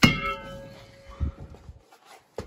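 A single sharp metallic clang against the car's trunk, ringing on with several pitches that fade over nearly two seconds, followed by a few faint knocks.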